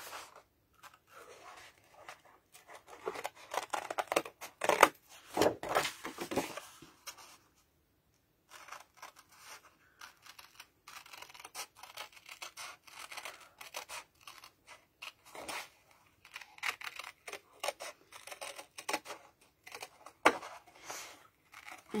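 Small X-Cut 4.5-inch craft scissors snipping through woodgrain cardstock in many short, quick cuts, with paper rustling as the card is turned around the curves. There is a brief pause about a third of the way through.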